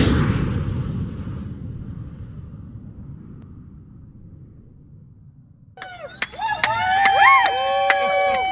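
An intro sound effect: a swoosh with a deep boom that fades away over about five seconds. Near the end, a recording of voices cuts in, with held, pitched calls and sharp clicks.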